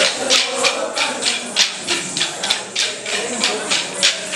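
Wooden Kolata sticks struck together by a troupe of dancers in a steady rhythm, about three to four sharp clacks a second.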